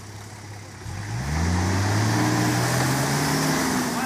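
Nissan Patrol GR Y60 4x4 engine revving hard, rising sharply about a second in, held high, then dropping back near the end. It is the vehicle straining in a deep mud rut and failing to climb out.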